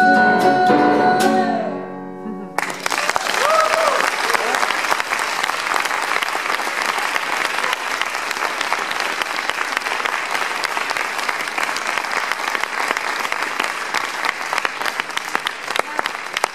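The song's last held note and chord on grand piano and nylon-string guitar fade out. About two and a half seconds in, audience applause starts suddenly and goes on steadily, with one voice calling out briefly just after it begins.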